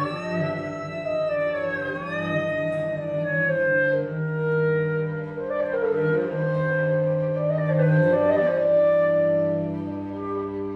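Clarinet, violin and cello trio playing live: a high line swoops slowly up and down in pitch over a long held low note.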